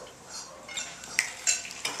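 Cutlery and dishes clinking in a room, with a few sharp clinks in the second half.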